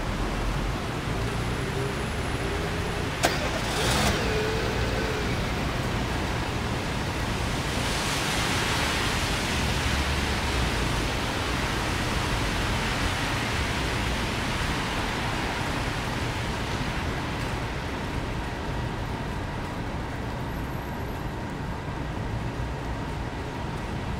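Car driving along a city street, heard from inside the car: steady tyre and road noise with a low engine rumble. A sharp click sounds a little over three seconds in, and the road noise swells for a few seconds around eight to twelve seconds in.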